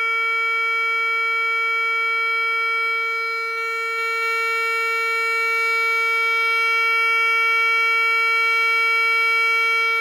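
Atlas SD-370 siren speaker driver, fed from a stereo amplifier, sounding an electronic siren's 'alert' signal: one loud steady pitch with a bright stack of overtones. The driver, handed out as blown, is playing cleanly.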